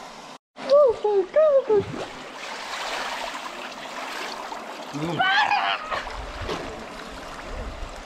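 Swimming-pool water splashing and sloshing around a swimmer, a steady wash that is strongest in the middle. A man's voice calls out a few times over it, about a second in and again near the five-second mark.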